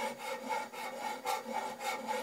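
Repeated rasping strokes, about three a second.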